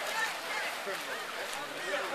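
Several people's voices talking and calling out, over a steady hiss of splashing from swimmers in the pool.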